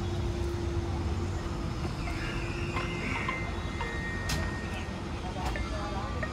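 Steady low rumble of outdoor background noise with faint distant voices, and a few brief high tones about two to four seconds in.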